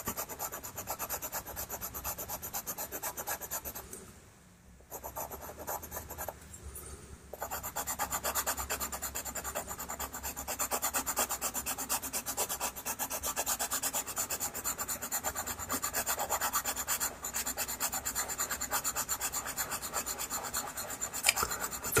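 Pastel pencil scratching across textured pastel paper in rapid, short shading strokes, with a brief pause about four seconds in.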